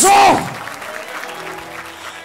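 A preacher's amplified shout breaks off, and a congregation applauds, an even clatter of hands, with a faint held musical note underneath.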